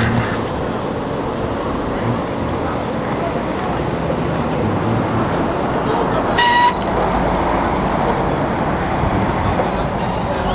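Steady road and traffic noise heard from a moving bicycle. About six seconds in, a loud, shrill tone lasts half a second.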